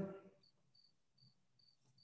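Near silence with a cricket chirping faintly in the background: about five short, high chirps, evenly spaced.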